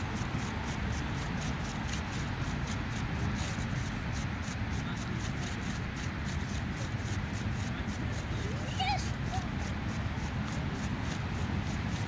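Steady low rumble of wind on the microphone, with a brief faint voice about nine seconds in.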